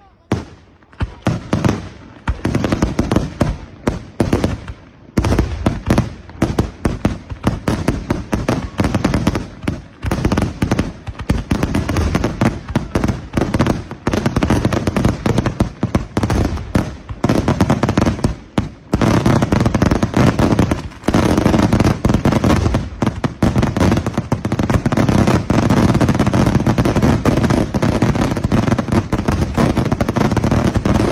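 Aerial fireworks bursting, one bang after another at first and quickening into a near-continuous barrage of shell bursts and crackle in the second half.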